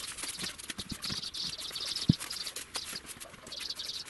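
A short straw broom sweeping brisk, scratchy strokes across a fresh concrete surface, clearing off the grit loosened by rubbing it with a foam float. There is one sharper knock about two seconds in.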